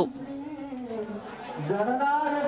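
Crowd chatter with a man's voice, quieter than the narration around it; the voice glides sharply up in pitch about one and a half seconds in.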